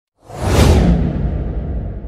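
Logo-intro whoosh sound effect with a deep rumble underneath: it swells in quickly a moment after the start, then its hiss falls away and the rumble fades out slowly.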